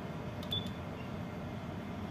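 A short click with a brief high beep about half a second in, as a menu is clicked open on the Furuno ECDIS console, over a steady background hum.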